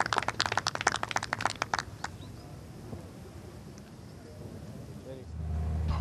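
A small gallery of spectators clapping, rapid sharp claps that die away about two seconds in, leaving quiet outdoor ambience. Near the end a steady low rumble comes up.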